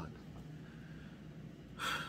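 A man's short, sharp intake of breath through the mouth near the end, after a pause of low room hiss, as he breathes in before speaking again.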